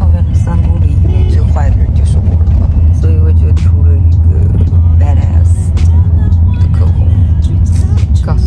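Steady low rumble of a moving car, heard from inside its cabin.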